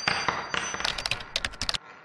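Animation sound effects for a subscribe end card: a noisy swish with steady high ringing tones, then about a second in a quick run of sharp clicks that stops suddenly, leaving a fading echo.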